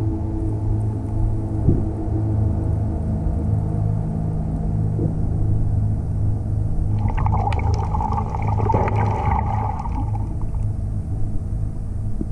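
Steady low engine drone with several hum tones, heard underwater, typical of a boat motor running nearby. About seven seconds in come a few seconds of crackling, bubbly water noise.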